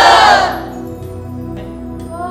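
A group of naginata students shouting a kiai in unison: a loud massed shout that breaks off about half a second in, over steady background music.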